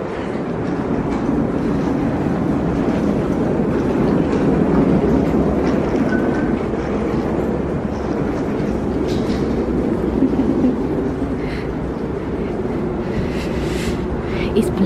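Wheeled suitcase being pulled over a rough tarmac walkway: a steady rumble from its wheels.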